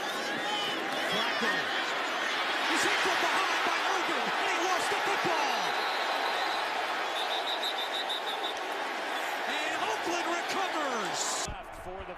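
Football stadium crowd cheering a home-team defensive play: a steady, loud roar of many voices that cuts off abruptly near the end.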